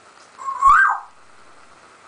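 African grey parrot giving one short whistle about half a second in, rising in pitch and then dropping back down.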